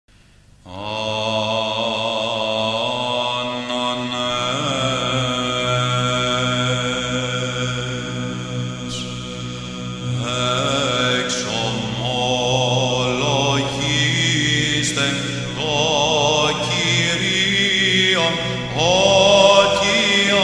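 Orthodox church chant: sung voices carrying a gliding melody over a steady, held low drone note. It begins about half a second in.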